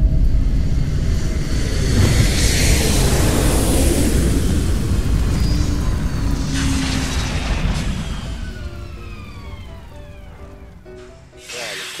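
Rocket-launch engine roar as a produced sound effect: a loud, deep rumble that has just started after main engine ignition, with a rising whoosh about two to four seconds in. Several falling whistling tones follow from about six seconds, and the whole effect fades out by about eleven seconds, under background music.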